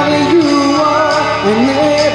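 A male singer sings live into a handheld microphone, amplified over instrumental accompaniment. The sung line holds notes and slides up into new ones.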